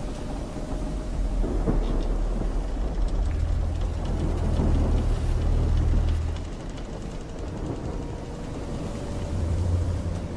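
Layered sea-and-ship ambience: a steady wash of ocean and wind noise, with a deep rumble that swells from about a second in and fades out at around six and a half seconds, and returns briefly near the end.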